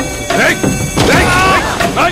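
Film fight-scene sound mix: a smashing impact of a blow about a second in over background music, followed by a man's drawn-out cry.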